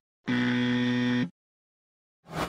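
A buzzer sound effect: one steady, low buzzing tone lasting about a second, cutting in and off abruptly.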